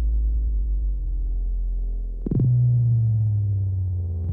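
Electronic dance music from a DJ set stripped down to deep sine sub-bass notes with no high percussion. About two seconds in, a single percussive hit lands, and a higher bass note then slides slowly down in pitch.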